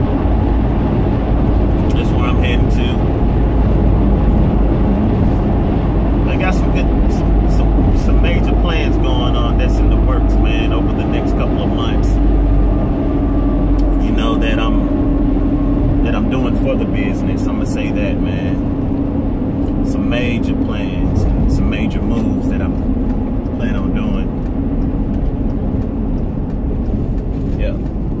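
Steady road and engine rumble inside the cabin of a moving car on the highway. A man's voice talks on and off over it, and a steady hum rises for about ten seconds in the middle.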